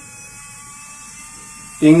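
Small brushed DC motor running steadily as a load on the battery, a faint even whirr with a thin high whine, pulling the battery voltage down.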